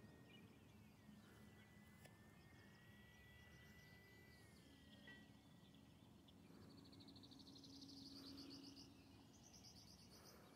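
Near silence: faint outdoor background, with a thin steady tone in the first half and faint rapid chirping in the second.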